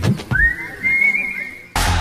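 A single whistle that slides up and then holds a steady high note for about a second before stopping. Near the end, loud music from the channel's logo ident starts abruptly.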